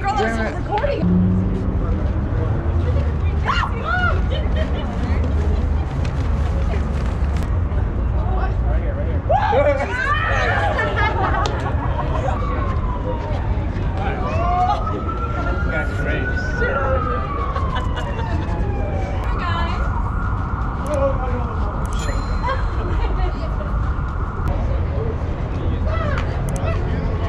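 Busy street ambience: a steady traffic rumble and scattered voices of passers-by, with an emergency-vehicle siren wailing slowly up and down about halfway through, then holding one steady pitch for about five seconds.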